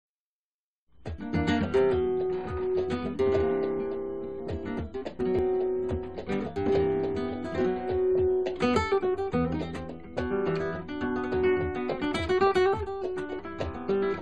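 Flamenco guitar made by Jorge de Zofia, played solo: a bulerías falseta of quick plucked phrases and chords, starting about a second in.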